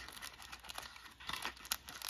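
Faint crinkling and rustling of clear plastic packaging handled by hand: a run of small crackles that gets busier in the second half.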